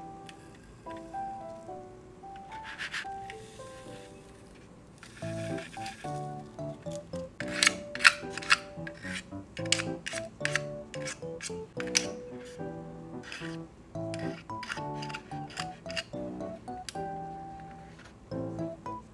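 Soft plucked-string background music, with a plastic fork scraping and clicking against a plastic candy-kit tray over it, brushing away excess black candy sprinkles in a series of sharp scrapes and taps from about five seconds in.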